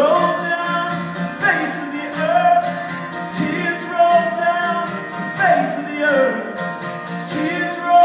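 Live acoustic guitar with a wordless sung melody that slides between held notes.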